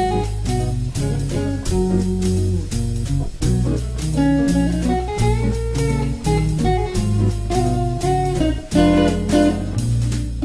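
Electric guitar playing an improvised jazz solo line in E-flat minor over a backing track with bass and drums.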